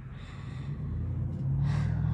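A low rumble swells through the pause, with a person drawing a short breath near the end.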